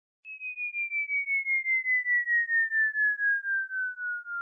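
Falling-bomb whistle sound effect: a single pure tone starting shortly in and gliding slowly down in pitch, its loudness pulsing about five times a second and swelling over the first couple of seconds.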